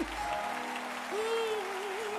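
Live gospel music with audience applause: a note is held steadily while a voice comes in about a second in, singing or humming a long wavering note.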